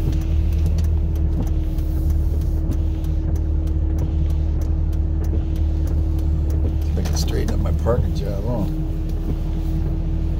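Steady low engine and road rumble with a constant hum inside a car's cabin as the car rolls slowly along.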